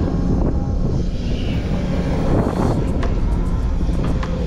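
Heavy-equipment diesel engine of a Hyundai loader running steadily, with a few sharp cracks about three seconds in.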